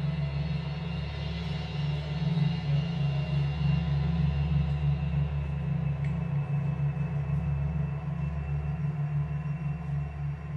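Live instrumental progressive rock band playing a slow, sustained passage: a deep low drone pulsing rapidly, under held higher tones, with no drum hits.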